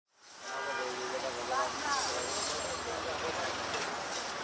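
Busy street noise fading in: people's voices and traffic, with a steady low engine hum that cuts off near the end.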